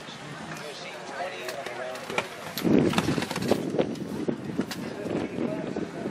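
A horse's hoofbeats cantering on sand arena footing, a string of irregular dull thuds, with faint voices in the background. A louder rush of noise comes in about halfway through.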